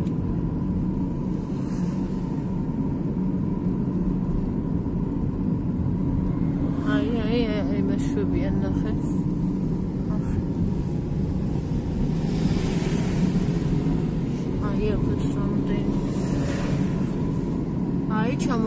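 Steady road and engine rumble heard from inside a moving vehicle. A person's voice comes in briefly about seven seconds in and again near the end.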